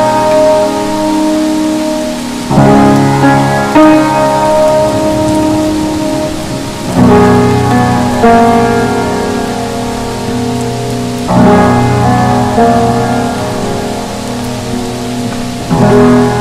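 Steady rain hiss under slow, soft jazz chords: new chords come in pairs about every four seconds, each held and fading.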